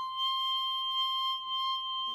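Clarinet holding one long, steady high note.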